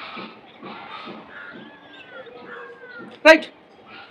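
Mostly faint background with a few faint, falling animal calls in the middle, then a man says "right" near the end.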